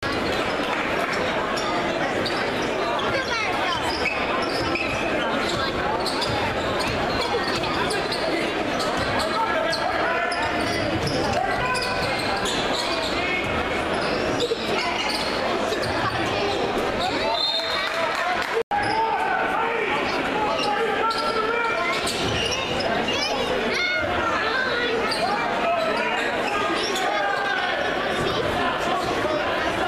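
A basketball dribbling on a hardwood gym floor during a game, with spectators' voices carrying through the large, echoing hall.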